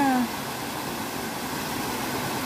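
Steady rushing of a rocky stream cascading over boulders, an even hiss of white water. A voice trails off in the first moment.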